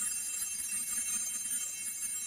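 Altar bells rung at the elevation of the chalice during the consecration: a high, sustained jingling ring of several small bells that fades away near the end.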